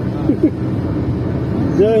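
Steady road and engine drone heard from inside a moving car at highway speed, with a brief voice early on and a man starting to speak again near the end.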